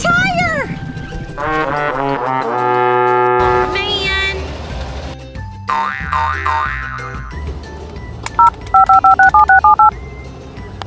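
Cartoon sound effects over background music: a descending, stepping brass-like 'wah-wah' slide and a springy boing, marking the flat tire. Near the end come a quick run of about eight loud two-tone beeps, the keypad tones of a toy phone being dialed.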